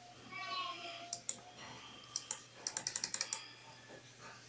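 Sharp plastic clicks at a computer: two about a second in, two more just after two seconds, then a quick run of about eight clicks.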